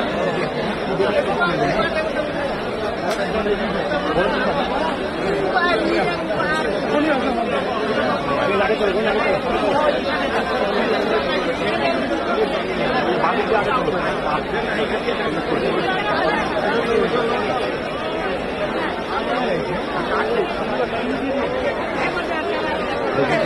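A large crowd talking all at once: many voices overlapping in a dense, steady babble, with no single speaker standing out.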